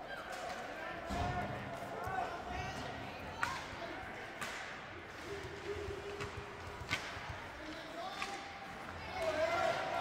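Ice hockey game in a rink: several sharp clacks of sticks and puck, a second or more apart, over spectators' shouting voices.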